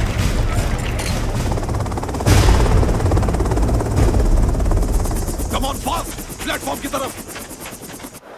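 Film battle sound effects: rapid automatic gunfire over a heavy low rumble. A sudden loud blast comes about two seconds in, and shouts follow near the end.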